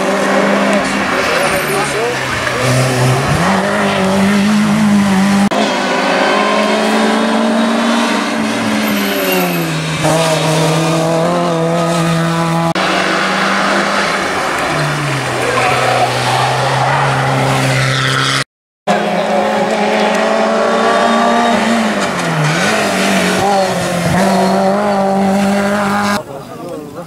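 Race car engines at high revs climbing a hillclimb course, the engine note rising and dropping repeatedly with gear changes and throttle lifts. The sound cuts out briefly about 18 seconds in.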